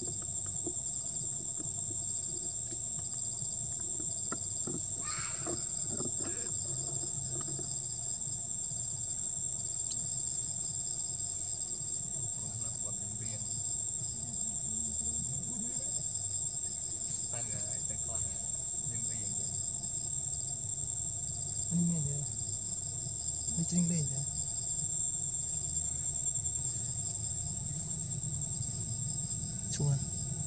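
Insects calling: one steady high-pitched whine, with a softer pulsing trill below it.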